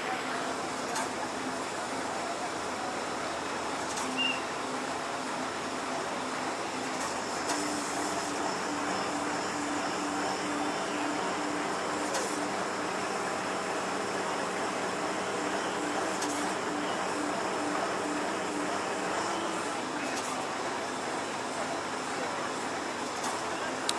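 Steady running of heavy machinery, most likely the engines of the truck-mounted cranes working the booms, with a low pulsing hum from about seven seconds in until near the end.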